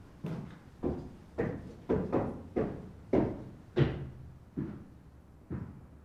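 Footsteps climbing a steep staircase, about ten firm treads a little under two a second, growing louder in the middle and fading near the end as the climber reaches the top.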